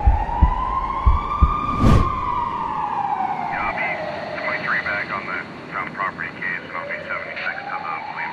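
Police siren wailing in a slow rise and fall: it peaks about two seconds in, sinks away, and starts to rise again near the end. A few heavy thumps come in the first two seconds, and a woman's tearful voice runs under the siren from about halfway.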